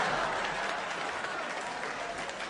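Theatre audience applauding and laughing, slowly dying down.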